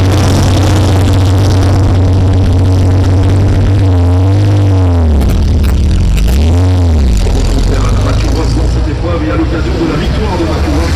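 Early Porsche 911's air-cooled engine idling steadily, then blipped twice, about four and six and a half seconds in, each rev rising and falling. Afterwards it settles lower and drops slightly in level as the car moves off.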